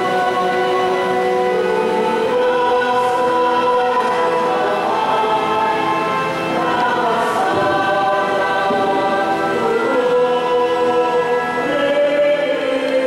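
A choir singing a hymn during Mass, in slow, long held notes.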